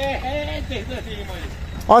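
Men's voices talking softly, over a low steady rumble.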